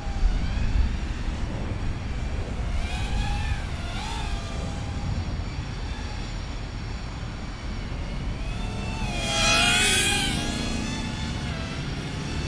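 Tiny 65 mm toothpick FPV quadcopter's brushless motors and propellers whining, the pitch rising and falling with throttle, over a steady low rumble. Near the end the whine grows louder for a second or so with an extra harmonic on top of the prop sound, a kind of strange sound whose cause is unclear.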